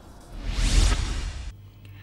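A whoosh transition sound effect with a deep rumble, swelling up a third of a second in and cutting off abruptly about a second and a half in.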